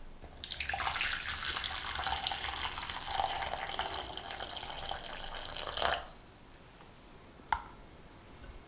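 Hot water poured in a steady stream into a large glass mixing bowl, filling a water bath; the pour stops sharply about six seconds in. Near the end there is a single sharp clink of glass.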